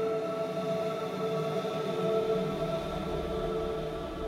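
Ambient background music of steady, sustained held tones, with a low rumble coming in about halfway through.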